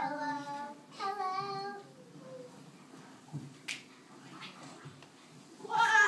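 A child's voice holding two long sung notes, the second one wavering, followed by a quieter stretch and then a short loud vocal sound near the end.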